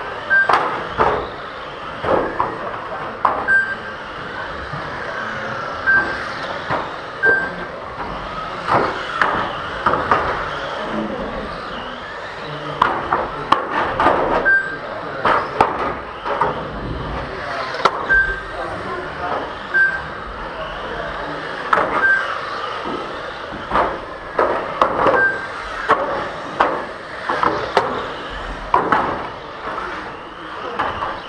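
Electric 1/12-scale GT12 radio-controlled cars racing on a carpet track: high motor whine rising and falling as the cars accelerate and brake, with many sharp knocks of cars striking the track barriers. Short high beeps from the lap-timing system recur every few seconds as cars cross the line.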